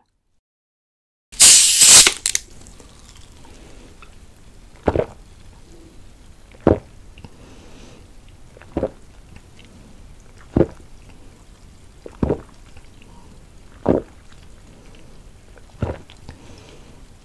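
A plastic bottle of sparkling water opening with a loud fizzing hiss about a second in, then seven swallowing gulps, spaced about two seconds apart, as the water is drunk straight from the bottle.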